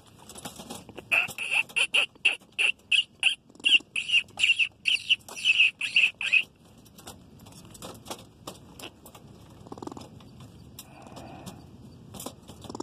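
A groundhog caught in a wire cage trap gives a rapid run of short, high-pitched calls, about three a second, for about five seconds, starting about a second in.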